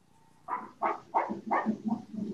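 A rapid string of five short animal calls, about three a second, heard over a video call.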